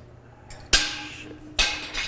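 Two sharp metallic clanks about a second apart, the first the louder, each ringing briefly: metal striking the steel of the robot arm.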